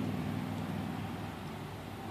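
Steady outdoor background noise with a low hum that fades over the first second or so.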